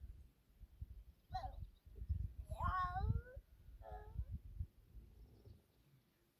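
Three short high-pitched calls, the middle one longest and loudest, over a low rumble.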